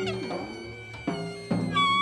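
Live free-jazz ensemble playing, with horns in wailing, bending notes. The sound dips about half a second in, and a loud new held horn note enters about a second and a half in.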